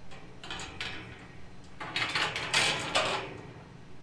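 Galvanised steel field gate rattling and clanking as it is handled and swung: a short spell about half a second in and a longer, louder one around two to three seconds in.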